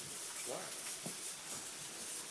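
Steady hiss of steam from a steam locomotive's boiler fittings in the cab.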